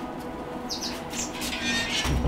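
A few short, high bird chirps in the second half, over soft background music with steady held tones.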